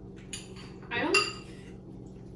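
Forks clinking against plates and bowls as people eat, with two sharp clinks, one about a third of a second in and a louder one just after a second.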